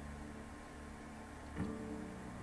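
Quiet room tone with a steady low electrical hum, and one faint short sound about a second and a half in.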